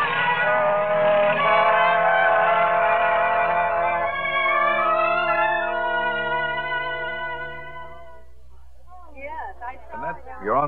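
Orchestral bridge music of held chords that swell and then fade out about eight seconds in, with a sound-effect aircraft engine running beneath it for the first few seconds. A voice begins just before the end.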